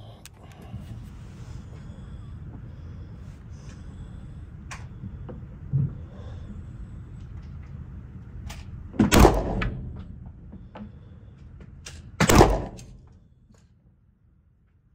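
Beretta 92 FS 9mm pistol fired twice, about three seconds apart. Each shot is a sharp crack with a short echo off the walls of the indoor range.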